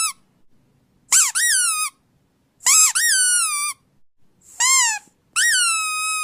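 A series of high-pitched squeaks, each sliding up and then down in pitch, about four in all with short silences between, the last one held longer.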